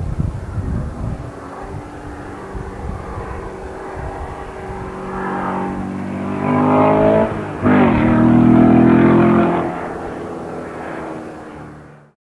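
Sports car engine accelerating on the road, its note climbing through the revs, with a short break about seven and a half seconds in like a gear change. It is loudest just after the break, then fades away near the end.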